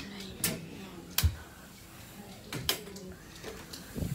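A few sharp clicks and knocks, the last two close together, over quiet room sound.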